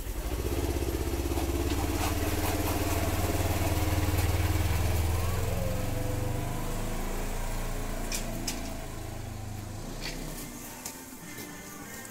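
Side-by-side utility vehicle's engine running as it pulls away and drives off, its sound fading and then cutting off abruptly about ten seconds in.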